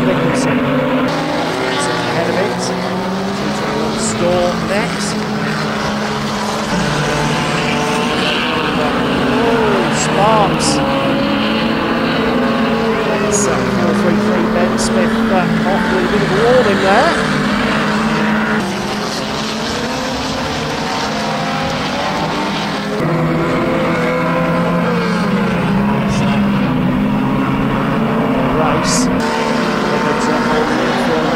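Engines of several old saloon stock cars running hard around an oval, their pitch rising and falling as the drivers rev and back off, with scattered sharp clicks. The sound eases for a few seconds past the middle, then comes back up.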